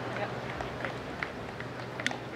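Faint, low talk among people standing on a golf course, over open-air background noise and a steady low hum.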